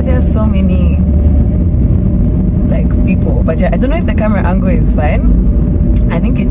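Steady low rumble inside a moving car's cabin, with a woman talking over it in the first second and again from about halfway on.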